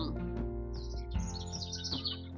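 Soft background music holding steady sustained tones. Small birds chirp with short, high calls from a little after a third of the way in.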